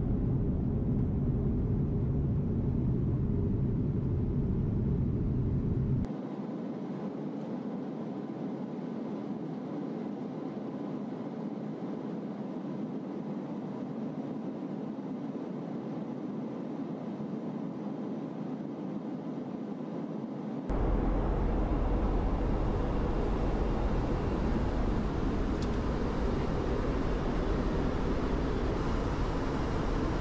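Steady rushing cabin noise of a flying RAF Voyager tanker aircraft, its jet engines and airflow heard from inside. About six seconds in it drops abruptly to a quieter, thinner hiss, and about two-thirds of the way through it jumps back to a louder, deeper rush.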